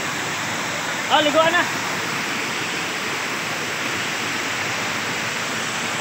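Water running down a rocky waterfall cascade, a steady rushing noise. A voice calls out briefly about a second in.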